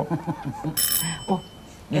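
A doorbell rings once, briefly, about a second in, its high tones lingering for a moment after the ring.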